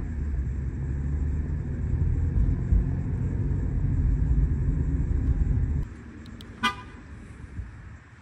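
Road noise inside a moving car's cabin, a steady low rumble, which stops abruptly about six seconds in. A moment later comes a single short car horn beep.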